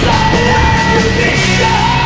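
Norwegian black metal recording playing loud: distorted guitars and drums under a harsh screamed vocal. About a second and a half in, the low end settles into held, sustained chords.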